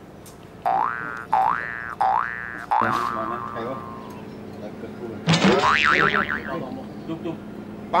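Cartoon-style comedy sound effects: three quick rising boings about a second in, then a longer tone sliding down, then a louder warbling, wobbling effect about five seconds in.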